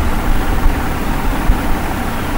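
Steady low background rumble, with no words over it.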